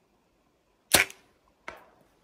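Compound bow shot: near silence at full draw, then about a second in a single sharp crack as the string is released, followed by a second, much fainter knock.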